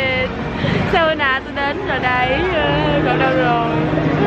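People talking over the steady noise of a busy city street, with a low, steady hum of a vehicle engine joining in during the second half.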